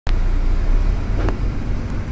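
Steady low engine rumble and road noise of a motor vehicle, heard from inside it through the glass, with one brief click a little past a second in.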